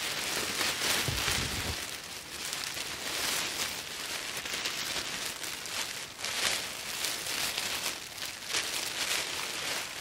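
Thin orange-and-silver Survive Outdoors Longer Mylar emergency blanket crinkling and rustling, in irregular loud flurries, as it is pulled and wrapped around the body. A brief low rumble about a second in.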